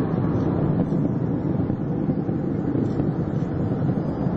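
Steady low rumble of space shuttle Atlantis's rocket motors during ascent, even and unbroken with no distinct events.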